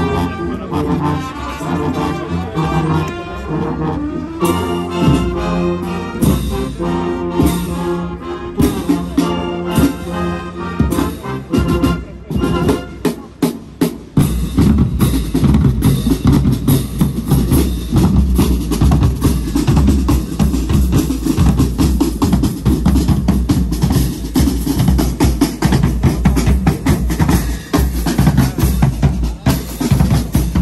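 A military brass band playing a march in the open air: trumpets, trombones, saxophones and tubas carry the tune over drums for the first twelve seconds or so. The brass then drops out, a few lone drum strikes follow, and from about fourteen seconds in the drum section, with big bass drums and snare drums, plays a loud, dense drum cadence.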